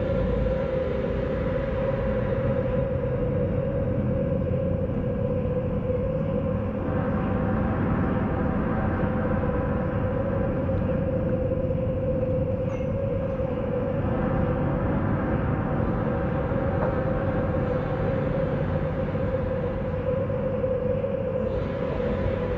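Steady machinery drone from a moored river cruise ship's generators: a constant hum with a low rumble under it, unchanging in level.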